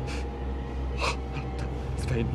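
Two short, sharp gasping breaths about a second apart, over a low steady drone.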